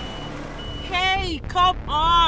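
A woman's voice singing in short held and sliding notes, starting about halfway through, over a low steady hum.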